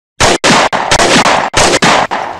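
Intro sound effect of rapid gunfire: four loud, dense bursts broken by short gaps, ending in a fading tail.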